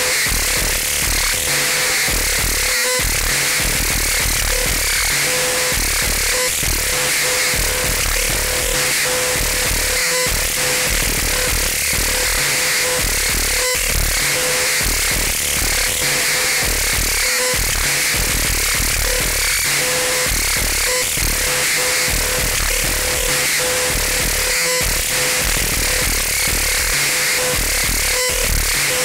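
Live experimental electronic noise music: a dense, steady wall of harsh hissing noise over stuttering low bass pulses, with a mid-pitched tone cutting in and out.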